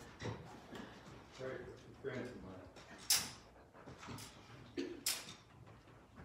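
Faint, indistinct talking, with two short hissing sounds about three and five seconds in.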